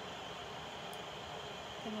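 A steady low hiss of room noise, with one faint click about halfway through.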